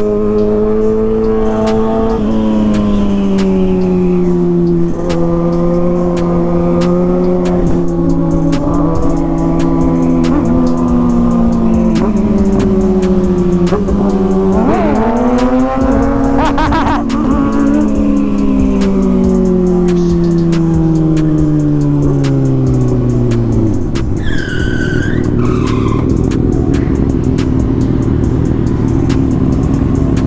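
Sport motorcycle engine running at high revs on the road, its pitch sagging slowly, climbing sharply about halfway through as the throttle opens, then falling away, with steady wind and road noise.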